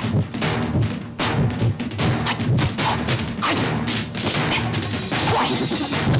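Film soundtrack music overlaid with a fast run of sharp, dubbed-in punch and strike sound effects, several hits a second, matched to a martial artist's blows.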